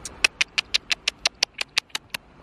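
A rapid, even series of sharp clicks, about six a second, over faint outdoor background noise.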